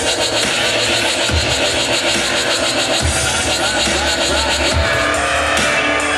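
Dubstep played loud over a club sound system during a live electronic set: dense synth sounds across the whole range over a heavy low bass hit that lands about every 1.7 seconds, once per bar at about 140 BPM.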